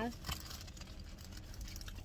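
Quiet car cabin: a low steady rumble with faint rustling and scattered light clicks of handling.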